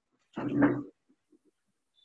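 A single short animal call, about half a second long, through a video-call microphone.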